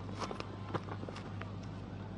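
Faint stadium ambience under a cricket broadcast: a steady low hum and a soft crowd haze, with a few faint short knocks scattered through it.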